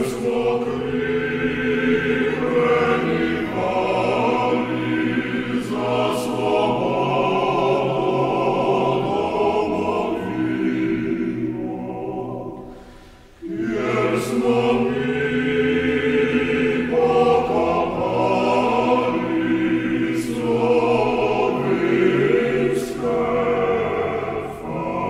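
Male vocal octet singing a cappella. About halfway through the singing fades and stops briefly, then the next phrase comes in.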